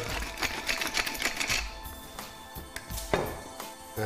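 Wooden pepper mill being twisted by hand, its grinder giving a rapid run of dry clicks as black peppercorns are ground.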